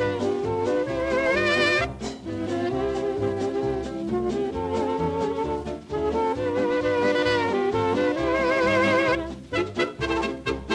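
Swing dance band from a 1940s record playing an instrumental passage: brass and saxophones hold notes with vibrato over a regular bass beat, breaking into short detached chords near the end.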